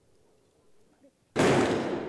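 A single stage gunshot sound effect: one sudden loud bang about one and a half seconds in, fading away over about a second.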